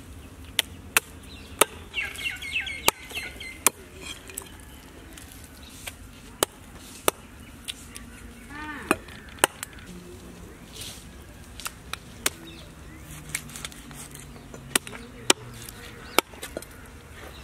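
A long knife chopping raw chicken on a wooden log chopping block: sharp, separate strikes at an uneven pace, up to about a second apart.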